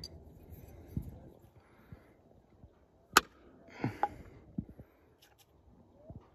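Close handling knocks while the dip can is set back on the log: a soft thump about a second in, one sharp click just after three seconds, and a few small knocks around four seconds.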